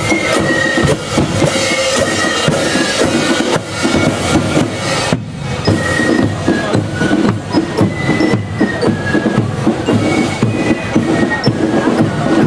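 Fife-and-drum marching band playing a march: a high fife melody over a steady beat of drums and cymbals.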